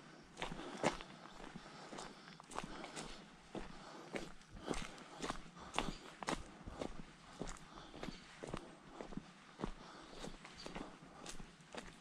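Footsteps of someone walking on a dirt forest path with small stones, at a steady pace of about two steps a second.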